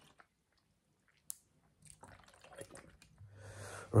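Faint drinking sounds from a plastic bottle: small sips, swallows and liquid movement, with one sharp click about a second in.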